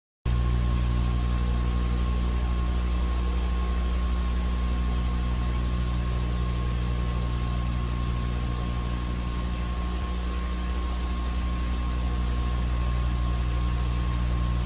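Steady electrical hum with a thin high whine and hiss, unchanging throughout. It is the noise floor of an old video recording, with no distinct race sound heard.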